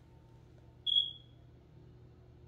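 A single short, high-pitched electronic beep about a second in, fading out quickly.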